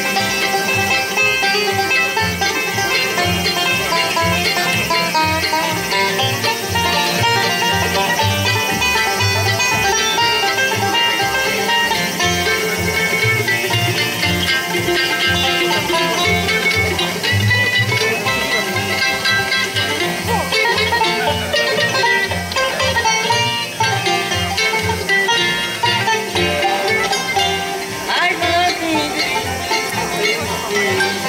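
Bluegrass band playing live: five-string banjo, mandolin, acoustic guitar and upright bass, with the bass marking a steady beat.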